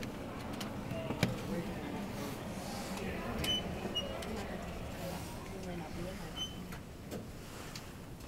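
Schindler 400A machine-room-less traction elevator car with a steady low hum. There is a sharp click about a second in and three short high beeps in the middle.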